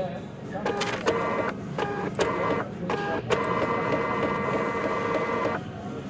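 A printer's motor whining in several short starts and stops, then one steady run of about two seconds that cuts off sharply near the end.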